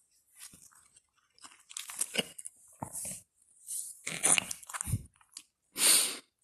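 Irregular bursts of crunching, rustling noise, a few each second, loudest near the end.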